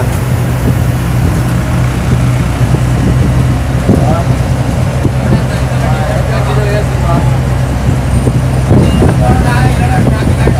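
Inside a moving diesel bus: the engine's steady low drone and road noise fill the cabin.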